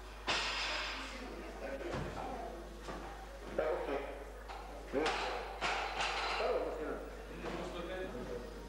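A loaded barbell jerked overhead and then dropped onto the weightlifting platform, with thuds, and people calling out in the hall.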